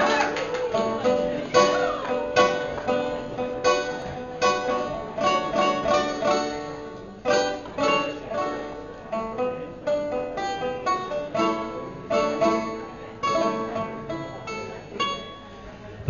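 Banjo picked solo: a run of single plucked notes, each ringing briefly, in a steady rhythm.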